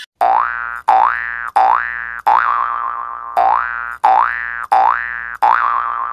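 Cartoon-style 'boing' comedy sound effect played eight times in a row, each a quick rising pitch glide that levels off, about two and a half a second.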